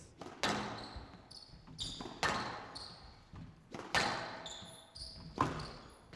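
A squash rally: the ball is struck by rackets and cracks off the walls of a glass court about every second and a half to two seconds, each hit echoing in the hall. Short high squeaks of the players' shoes on the court floor come between the shots.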